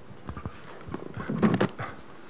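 Handling noise on a handheld microphone as it is passed from one person to another: irregular knocks and rubbing, loudest about one and a half seconds in.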